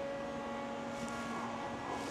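A powered-up Haas VF-2SS CNC vertical machining center humming steadily at rest, with several thin whining tones over the hum. A lower tone comes in at the start and fades out near the end.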